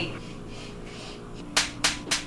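Room tone, then two sharp, light taps from a claw hammer near the end, about a third of a second apart.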